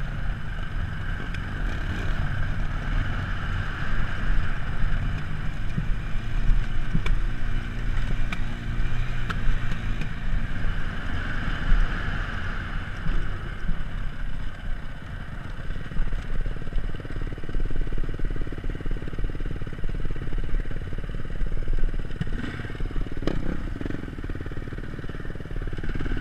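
2006 Beta RR450 four-stroke single-cylinder dirt bike engine running at low trail speed, heard from a camera mounted on the bike, its note rising and falling as the throttle opens and closes. Occasional knocks and rattles come from the bike over rough ground.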